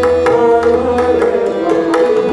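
Tabla drumming, quick sharp strokes over held harmonium notes and the steady drone of a tanpura, accompanying a Hindustani classical vocal performance.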